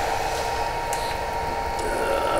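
Room tone between talk: a steady hiss with a faint constant tone underneath and no distinct sound event.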